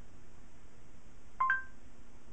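A smartphone's voice-search earcon: a short two-note electronic chime, the second note higher. It sounds as Google voice search stops listening and gives up with no speech heard.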